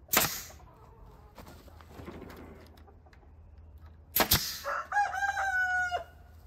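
A rooster crowing: one drawn-out, steady call beginning near the end. Two short, sharp bursts of noise come before it, one at the start and one about four seconds in.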